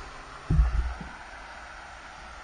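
A low, muffled thump about half a second in and a smaller one just before a second, over faint steady hiss, like bumps or buffeting on a bike-mounted camera's microphone.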